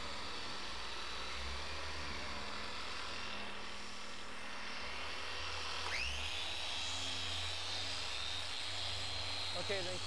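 Porter Cable 7424XP dual-action polisher, fitted with a 5-inch hybrid foam pad on a 3.5-inch backing plate, switched on about six seconds in: its motor whine rises quickly and then holds steady at the sixth speed setting. A steady low hum of machine polishing runs underneath throughout.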